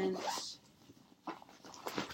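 A woman's wordless vocal sound effect, a pitched voice that bends up and down and ends about half a second in. It is followed by quiet handling of a fabric bag with a couple of faint clicks as the bag is opened out.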